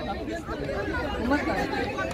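Low chatter of people talking in an outdoor crowd, softer than the main speaker's voice, over a steady low street background.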